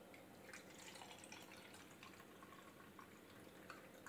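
Faint trickle and drips of water poured from a cup holding lemon slices into another cup.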